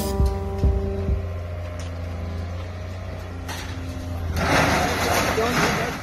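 Background music fading out about a second in, leaving the steady low drone of a scrapyard material-handler grab's engine, with a louder rough noise over the last second and a half.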